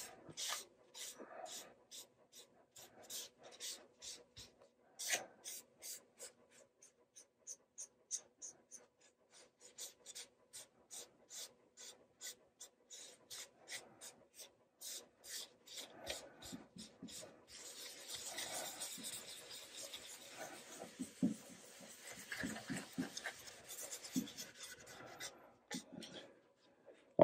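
Shop towel wiping alcohol-based dye across a quilted maple guitar top: faint, short rubbing strokes, about two or three a second, turning into a steadier rubbing in the last third.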